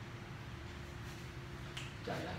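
Whiteboard marker writing on the board: a few short, scratchy strokes, the last near the end, over a steady low hum.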